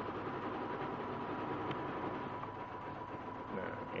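Steady background hum and hiss with a faint, constant high tone running through it; no stitching rhythm or clicks stand out.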